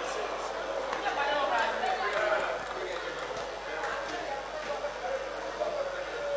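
Indistinct voices and chatter from spectators around a boxing ring, several people talking at once.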